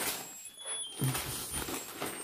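Gift-wrapping paper crinkling and tearing in irregular bursts as a present is unwrapped by hand.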